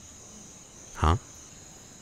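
A pause in a man's speech filled by a steady, faint, high-pitched background drone, with one short spoken 'haan' about a second in.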